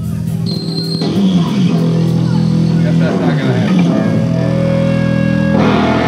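Amplified electric guitar and bass holding loud sustained notes, with the pitch sliding down twice in the middle, as the band noodles just before the song starts. A brighter, fuller chord comes in near the end.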